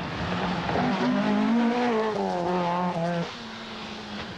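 Opel Manta rally car's engine under hard acceleration on a stage, the note climbing and falling with the throttle and gear changes, then dropping away shortly before the end.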